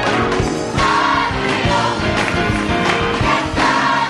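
Gospel choir singing in full voice over instrumental accompaniment with a steady beat.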